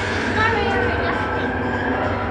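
Bombardier Innovia light-metro train running along elevated track, heard from inside the car: a steady low hum and running noise, with people talking over it.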